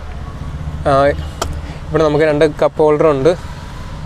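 A steady low hum of the car running, heard from inside the cabin, under short bursts of a man's speech about a second in and again in the second half.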